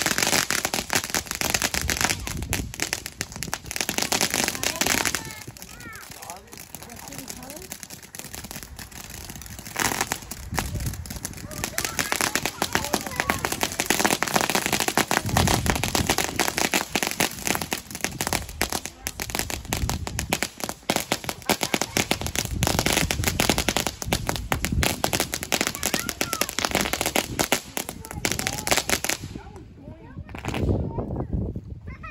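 Consumer ground fireworks crackling and popping rapidly, with a quieter spell early on, then a long dense run that stops abruptly just before the end.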